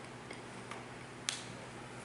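A few faint clicks and one sharper click a little past a second in, from a small object being handled, over a steady low room hum.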